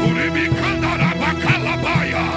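Worship band music with sustained keyboard chords over a steady drum beat of about two strokes a second. Short, repeated high chirpy figures sound over the top.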